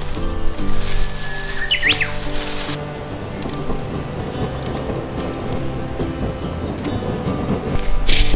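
Background music over the crackle of a wood fire of planer shavings and kindling burning in a campfire stand.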